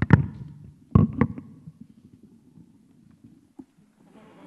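Handheld microphones being put down on a wooden stage floor, heard through the PA as heavy thumps: one at the start, then two close together about a second in. Faint handling noise follows.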